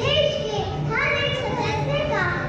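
Young children's voices, several together, speaking through stage microphones.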